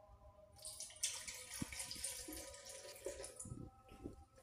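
Milk being poured from a glass into a stainless steel mixer-grinder jar onto chopped banana: a splashing trickle that starts about half a second in and fades out near the end.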